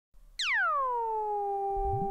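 Synthesizer tone that swoops steeply down in pitch and settles into a steady held note, with a low rising glide starting near the end: the opening of an electronic music track.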